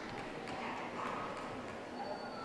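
Light, irregular footfalls of a handler and a spaniel trotting on ring carpet, over the murmur of a crowd in a large hall.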